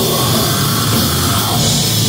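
Live heavy metal band playing loud: distorted electric guitars, bass guitar and drum kit in a dense, steady wall of sound.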